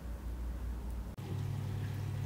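A low rumble, then after a cut about a second in, the steady hum of a Hozelock Cyprio Pond Vac's electric motor running as it sucks water out of a fish tank.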